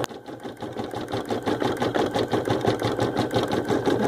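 Baby Lock Ellure Plus embroidery machine running, its needle stitching in a rapid, even rhythm while it sews the shading colour of a photo-stitch design.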